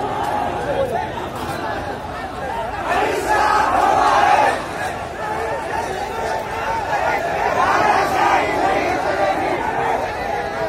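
A large crowd of marchers shouting together, many voices overlapping, swelling louder for a stretch about three seconds in.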